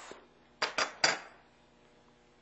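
Three light metallic clicks about a quarter second apart, as a trekking pole's lower section and its parts are handled against a metal workbench.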